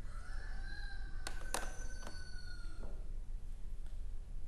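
A faint, drawn-out animal call in the background, lasting about two and a half seconds and holding nearly one pitch, with a few soft clicks during it.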